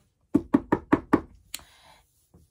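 Five quick knocks, about five a second, as of knuckles rapping on a door, followed by one sharp click.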